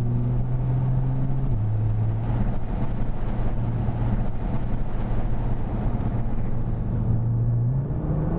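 Nissan GT-R's twin-turbo V6 running hard at fairly steady revs, heard onboard at speed over tyre and road noise. The engine note steps slightly lower about a second and a half in, then holds steady.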